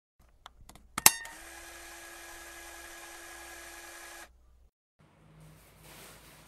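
Camcorder start-up effect: a few light clicks and one sharp click about a second in, then a steady tape-mechanism whir with a faint hum tone that cuts off suddenly after about three seconds. Faint room tone follows.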